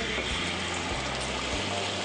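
Food sizzling on a hot metal sizzling plate: a steady, bright hiss.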